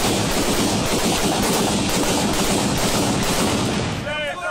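Sustained rapid gunfire, many shots running together into a continuous loud din that cuts off suddenly at the end.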